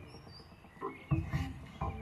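Quiet jazz with short, plucked low notes, a few of them clustered in the second half.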